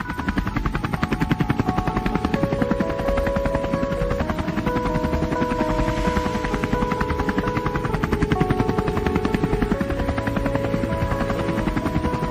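Helicopter rotor sound effect, a fast, steady chop, with a simple melody of held notes playing over it.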